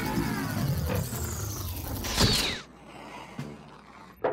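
Cartoon sound effect of a docking tube extending from one rocket to another: a dense mechanical stretching sound with sliding pitches for about two and a half seconds. It ends in a sharp clunk with a falling whistle as the tube locks on, then it goes quiet apart from a small click.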